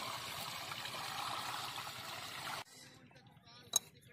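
Dung-mixed water poured steadily from a bucket into a tubewell pump's pipe through a cloth strainer, priming the pump before the diesel engine is started. The pouring stops abruptly after about two and a half seconds. Near the end there is one sharp metal click from a wrench on the pump fitting.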